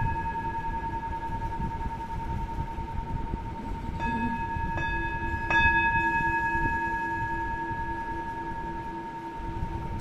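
Meditation music of struck bell tones ringing on with a long sustain. Fresh strikes come about four seconds in and twice more in the next second and a half, and a lower held note joins at about the same time.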